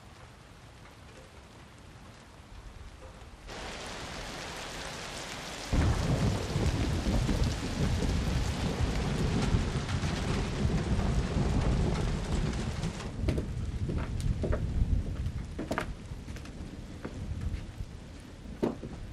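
Rain with a rumble of thunder. The rain is light at first, then becomes loud and heavy suddenly about six seconds in, with a deep rumble underneath, and eases off in the last few seconds.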